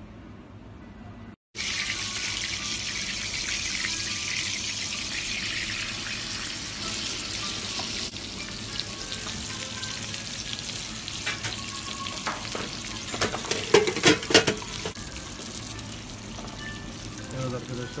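Chunks of meat frying in fat in a metal pan on a gas burner: a steady sizzle that starts abruptly about a second and a half in. Around two-thirds of the way through a spoon knocks and scrapes against the pan several times in quick succession, the loudest sounds here.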